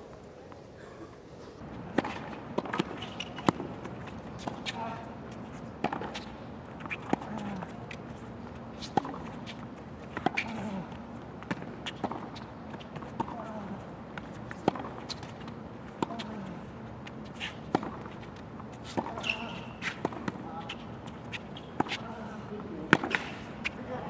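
Tennis rally on a hard court: sharp racket strikes on the ball about every one to one and a half seconds, with short grunts from the players after many of the hits.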